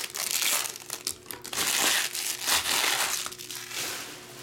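Foil trading-card pack wrapper crinkling as it is handled and pulled open, in irregular bursts that die down near the end.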